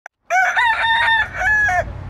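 A rooster crowing once, a cock-a-doodle-doo of about a second and a half in several held notes, starting a moment in.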